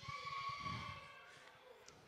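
A faint held tone that fades out after about a second, over a low murmur from the room.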